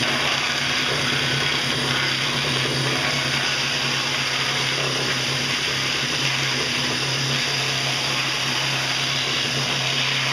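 Cordless drill running at full speed, spinning a homemade styrofoam grinder drum while a piece of styrofoam is pressed against it and chewed up. A steady motor hum under a loud, even scratching hiss of the foam being shredded.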